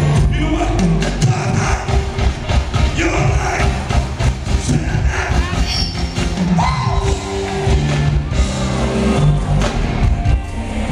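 Live R&B band playing, with bass guitar and drums under a male lead vocal sung into a microphone, heard through the concert's loudspeakers.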